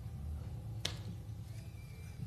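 A single sharp click about a second in, over a low steady hum.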